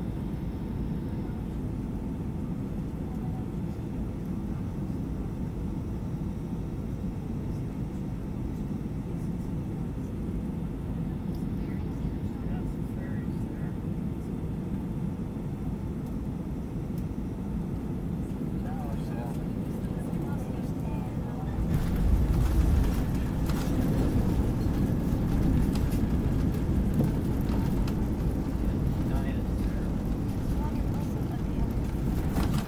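Cabin noise of a Boeing 757-200 on final approach: a steady low rumble of engines and airflow. About two-thirds of the way through it touches down, and the noise turns suddenly louder and rougher with the wheels rolling on the runway and the spoilers up.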